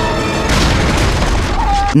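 Action-film soundtrack: a loud, dense low rumble with a boom about half a second in, under music.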